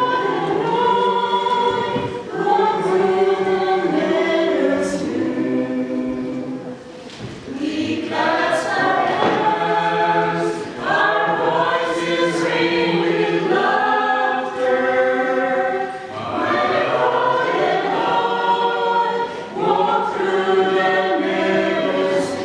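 Small mixed choir of women and men singing a hymn together, phrase after phrase, with a short break between phrases about seven seconds in.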